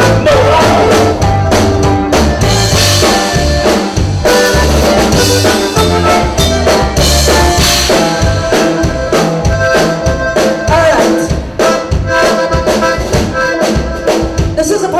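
Live Tejano band playing an instrumental passage: accordion carrying the melody over electric bass, drum kit and congas.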